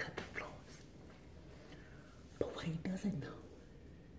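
A woman speaking softly, partly in a whisper, close to the microphone.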